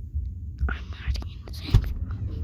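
A person whispering close to the microphone in short breathy bursts, with a sharp thump near the end that is the loudest sound.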